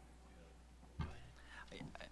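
Quiet room tone with a steady low hum. About halfway through there is a soft bump, followed by faint, quiet speech as someone begins to answer.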